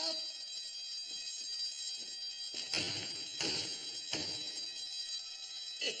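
Electric alarm bell ringing continuously with a steady high ring, the warning that something is wrong on board. Three heavier thumps, about two-thirds of a second apart, come through in the middle.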